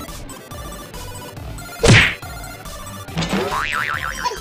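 Cartoon-style sound effects added in editing: a loud, fast falling swoop about two seconds in, then a wobbling boing near the end, over faint background music.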